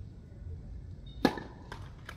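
A tennis racket striking the ball on a serve, one loud, sharp crack a little over a second in, followed by two fainter knocks.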